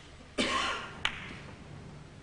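A short noisy burst about half a second in, the loudest sound, then a single sharp click of snooker balls colliding as the cue ball strikes the black.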